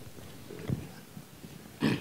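A pause between speakers: low room tone with a faint, low off-microphone murmur of voice about half a second in, then a man's voice starting near the end.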